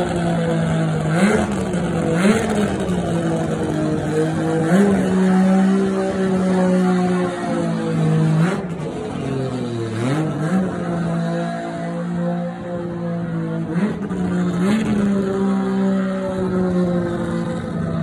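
Mazda RX-7's engine running loud on a cold start, holding a fast, steady idle with a handful of short revs that swing the pitch up and back down.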